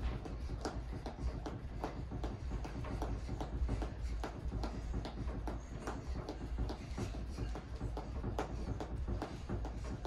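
Jump rope skipping on carpet: a steady rhythm of soft taps as the rope hits the floor and feet land, over a low steady hum.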